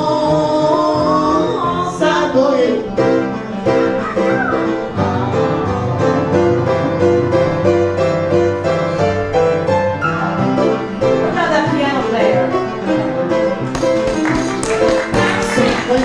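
Upright piano playing a live, rhythmic instrumental passage of a cabaret song, with the singer's voice sliding in briefly near the start and again later on.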